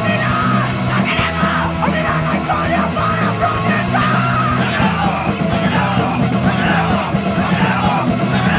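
Hardcore punk (powerviolence) recording: distorted electric guitars, bass and fast drums under yelled vocals, loud and unbroken.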